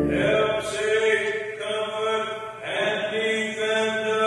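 A voice chanting a sung liturgical line in phrases about a second long, with sibilant consonants audible. A loud held organ chord breaks off right at the start.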